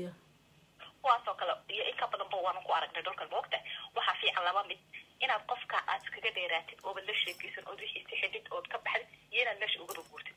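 A person talking over a telephone line, the voice thin and narrow-sounding, starting about a second in after a brief pause.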